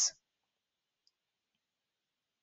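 Near silence with one faint click about a second in.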